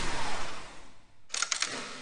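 Logo sound effect: a whoosh that fades out in the first second, then a quick run of camera-shutter clicks about a second and a half in.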